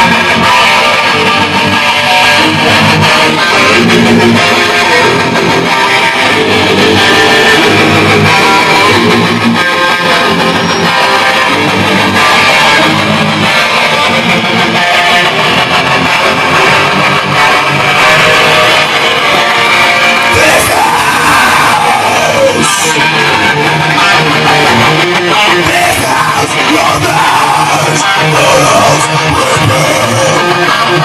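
A rock band playing live: two electric guitars through amplifiers, loud and continuous, with a singer's vocals in the later part.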